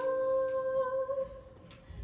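A girl's solo voice through a microphone holding one long, steady note with no accompaniment, fading away after about a second and a half.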